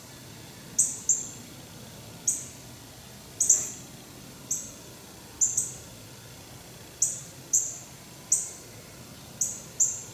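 Short, high-pitched chirps from a small animal, repeating irregularly about one or two a second, each starting sharply and dying away quickly. A single brief click comes about three and a half seconds in.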